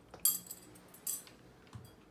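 Metal bangles and earrings clinking together as a hand rummages through a drawer of jewellery: a sharp clink just after the start, another about a second in, and a fainter one near the end.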